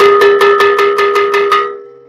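A metal gong struck rapidly, about five strokes a second, each stroke ringing on. It stops about one and a half seconds in, and the ringing fades away.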